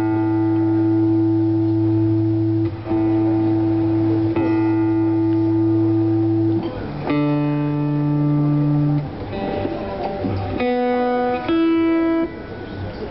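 Acoustic guitar playing an instrumental passage of long held notes, the chord changing every couple of seconds.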